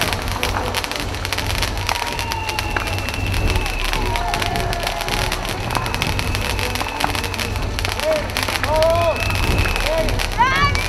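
A huge wood bonfire burning fiercely, with dense continuous crackling and popping over a low rumble of the flames.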